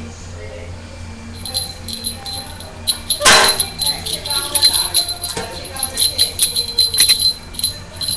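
Small hard objects rattling and jingling in a quick, irregular run of clicks, with a louder rattle about three seconds in, under faint children's voices.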